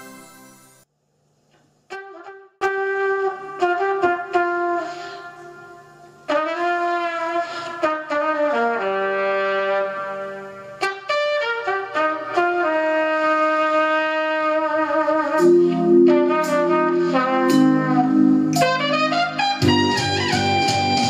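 The last second of a chiming intro jingle, a short gap, then the instrumental introduction of a slow blues backing track: a brass-like lead plays long held notes with vibrato over sustained chords, which grow fuller near the end.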